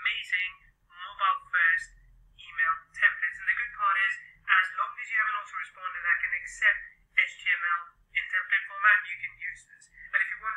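A person talking continuously, the voice thin and narrow with almost no low end, as if heard through a telephone or small speaker.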